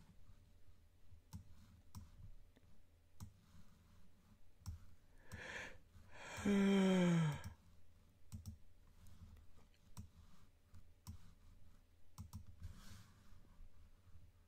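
Scattered light clicks of a computer mouse and keyboard. Near the middle a man breathes in and lets out one loud voiced sigh that falls in pitch.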